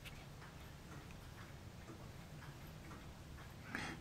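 Faint, light ticks, roughly evenly spaced, over a low steady hum.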